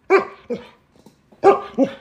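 Alaskan Malamute giving four short barks in two pairs, answering 'two plus two' by barking out the count of four.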